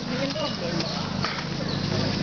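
Indistinct voices of a group of people outdoors, with a few light knocks under them.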